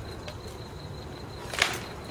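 A single sharp crack of a rattan sword blow landing in armoured combat practice, about one and a half seconds in, with a fainter click just before it.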